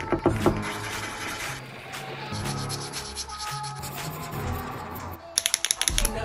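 Felt-tip marker rubbing and scratching across paper as it colours in, with a quick run of sharp clicks near the end.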